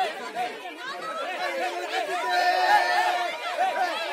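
A crowd of students shouting and cheering at once, many voices overlapping, with a longer held cry in the middle.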